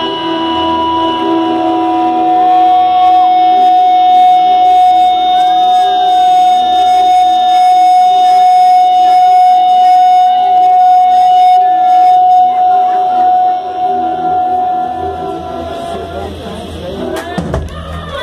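Live electric rock band playing the end of an instrumental: a long sustained high note is held for about twelve seconds over bass and drums. Near the end the sound drops steeply in pitch.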